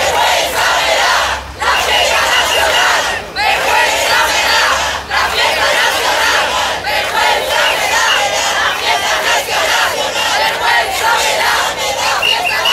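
A large crowd of protesters chanting a short slogan in unison, over and over, with a brief break about every two seconds.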